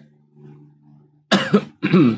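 A person clears their throat twice in quick succession near the end, after a soft, low hummed pause.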